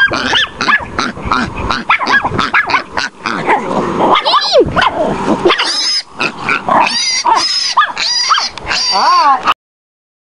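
Chihuahua barking and yipping in rapid bursts at a young wild boar piglet, with pig grunts and squeals mixed in. The sound cuts off suddenly just before the end.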